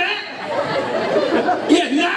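A man's voice through a stage microphone, garbled agitated speech without clear words, acting out anger.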